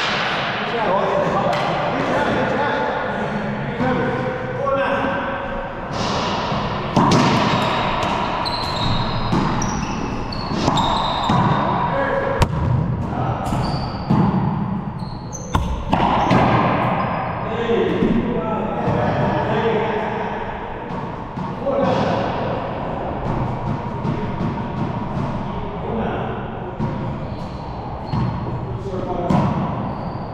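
Racquetball hits: the hollow rubber ball struck by racquets and bouncing off the court's walls and floor in sharp knocks a few seconds apart. Voices talk throughout.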